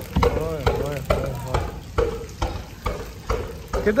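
Footsteps squelching through wet mud and shallow water, about two steps a second. A voice is heard briefly in the background about half a second in.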